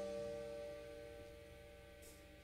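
The rock band's final chord, mainly electric guitars through amplifiers, ringing out and fading steadily away to near silence.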